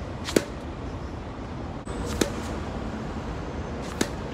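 Tennis ball struck with a racket on a low forehand side-spin hook shot: a sharp crack about a third of a second in, then a second, fainter impact about two seconds in, over a steady low background hum.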